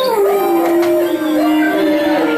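Human voices holding long notes that slide slowly down and back up, with a higher voice running alongside, like a drawn-out howl.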